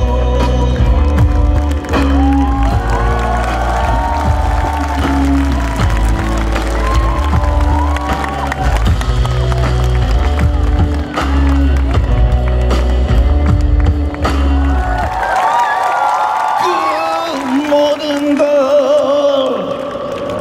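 Live pop music from a band with a heavy bass beat, under a male singer's voice. About fifteen seconds in, the bass and beat drop out, leaving the sung melody with a wavering pitch over lighter accompaniment.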